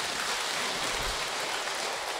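An audience applauding, many hands clapping in a steady patter.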